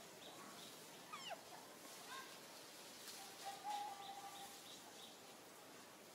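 Faint bird chirps, a short high note repeated about three times a second, with two louder calls: a quick falling call about a second in and a held whistled note about three and a half seconds in.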